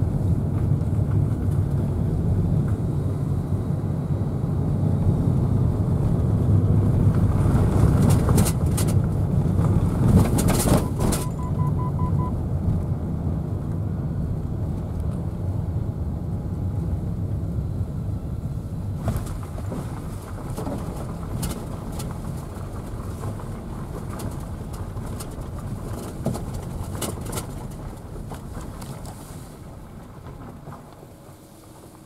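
Car driving slowly along a narrow forest road, heard from inside the cabin: a low, steady rumble of engine and tyres with scattered sharp clicks. It gets quieter through the second half as the car slows.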